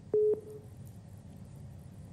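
A single short telephone-line beep, a steady mid-pitched tone, just after the start, followed by faint line hum: the studio phone line connecting to a caller.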